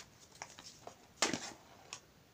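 Hands handling small plastic stamp-pad cases: a few light clicks and a short rustle a little over a second in.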